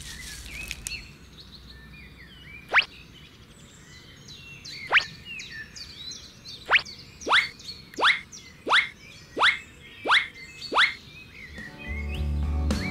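A series of nine quick falling-whistle sound effects, one for each red bean dropped onto the sand. The first two come a couple of seconds apart, the rest about every two-thirds of a second, over faint birdsong.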